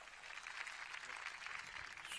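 A large audience applauding steadily, fairly faint.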